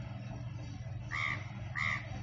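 A bird calling twice, two short calls about two-thirds of a second apart in the second half, over a steady low hum.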